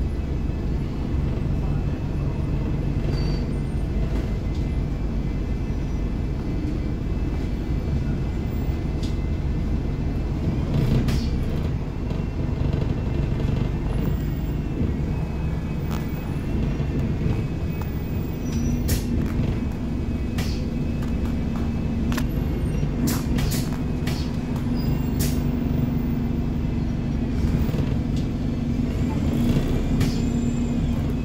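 Cabin of a moving single-deck bus: steady engine and road rumble, with a few sharp rattles or knocks from the fittings. A steady hum joins in a little past halfway.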